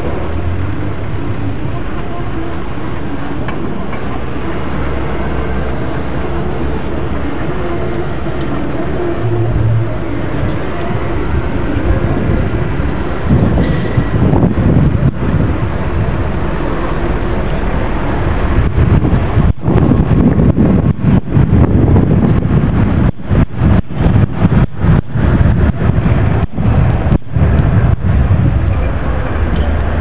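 Outdoor background noise with faint voices. From about 13 seconds in it turns louder and deeper, with many sudden brief dropouts, typical of wind buffeting the microphone.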